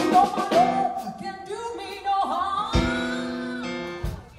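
Live blues band playing: electric guitar lead with bent, gliding notes over held organ chords.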